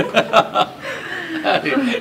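A man and a woman laughing, with a quick run of short laughter bursts in the first half second, then chuckling mixed with speech.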